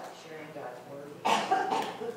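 A person's voice: low, indistinct speech, with one loud vocal burst about a second and a quarter in that lasts around half a second.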